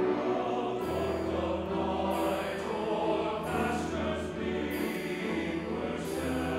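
Church choir singing with chamber orchestra accompaniment, a sustained low bass note entering about a second in.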